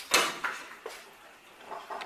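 Wooden canvas stretcher strips knocking together as they are handled: one sharp wooden clack just after the start, then a few faint taps.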